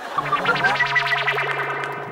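A short musical sting: a held low note under a quick run of bright high notes, beginning to die away near the end.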